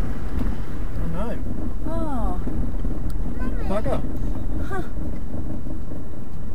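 Steady low rumble of a Mitsubishi 4WD moving slowly along a rough bush track, heard from inside the cabin. A few short spoken exclamations rise over it.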